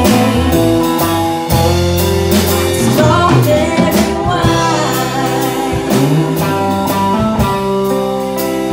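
Live country band playing a slow song: a woman sings lead over acoustic and electric guitars, bass and a drum kit keeping a steady beat.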